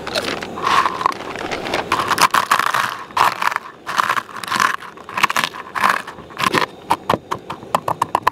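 Potato chips crushed with a metal spoon on a plate: repeated crunching and crackling, with the spoon scraping the plate. Near the end the crunches give way to quicker, sharper clicks as the chips break down into small crumbs.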